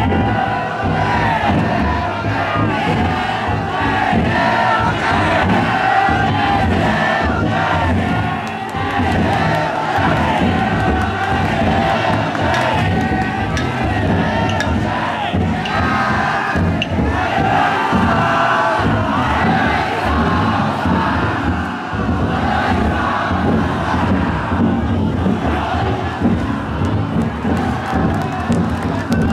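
Large crowd of festival float bearers shouting and calling out together, with the float's taiko drum beating underneath.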